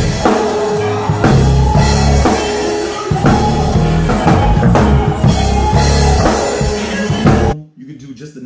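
Live band music: a drum kit with a six-string electric bass played through its built-in octave effect on the sub-octave setting, adding a deep octave below the bass notes. The music cuts off abruptly near the end.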